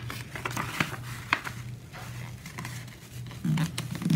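A sheet of printer paper being folded and pressed flat by hand: scattered crinkles and light sharp ticks from the paper, over a low steady hum.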